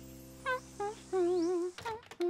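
A woman humming a little tune: two short notes, then a longer wavering note. Under it a held music chord fades out, and a few short clicks come near the end.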